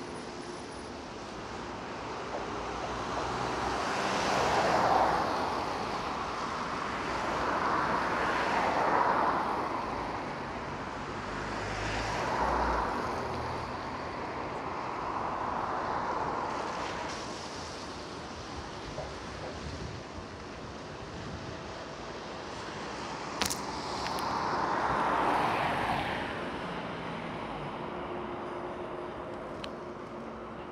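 Cars passing one after another on a wet road, each a swell of tyre hiss that rises and fades as it goes by, about five in all. A short sharp click comes a little over three-quarters of the way through.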